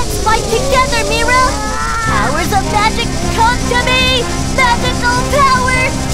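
Cartoon voices yelling and straining without words, over background music that settles into steady held notes about two seconds in.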